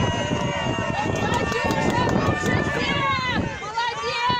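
Several spectators and teammates shouting and calling out at once, their raised voices overlapping into a continuous hubbub of cheering.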